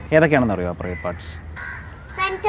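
A man's voice asking a question, followed by a short bird call in the background about a second and a half in.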